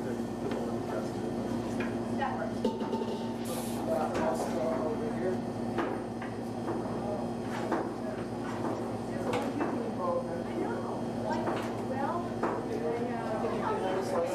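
Indistinct voices talking over a steady low hum, with scattered knocks and clatter and a brief hiss about three and a half seconds in.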